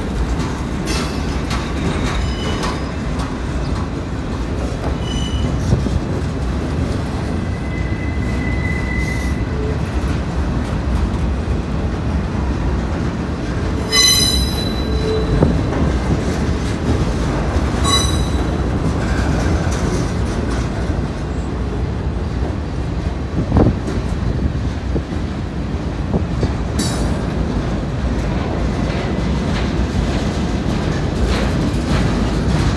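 CSX freight train cars rolling past close by on street-running track: a steady low rumble of wheels on rail. Short high-pitched metal squeals from the wheels come about halfway through, again a few seconds later, and near the end.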